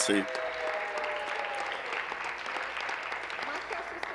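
Members of a legislative chamber applauding with their hands, a steady clatter of many people clapping that eases slightly toward the end.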